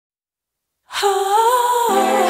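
Silent for about the first second, then a woman humming a slow, gently bending melody as the song opens; backing instruments join near the end.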